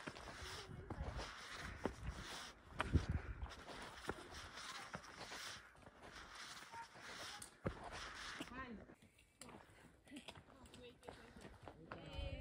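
Footsteps climbing rough stone steps and gravel trail, with scuffs and crunches at each step and faint, indistinct voices.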